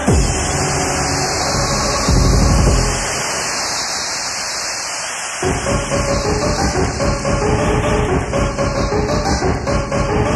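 Old-school acid and hardcore techno from a cassette DJ mix. About two seconds in there is a deep bass hit, then the low end drops away, and a fast electronic beat comes back in about five seconds in.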